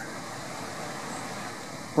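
Steady background noise: an even hum and hiss with no distinct sounds in it.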